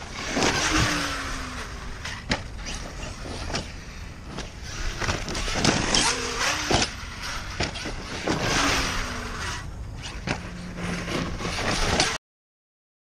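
ARRMA Kraton 1/5-scale 8S electric RC truck driven in bursts of throttle on dirt, its Hobbywing 5687 brushless motor's whine rising and dropping with tyres scrabbling through loose dirt. Several sharp knocks are spread through the run.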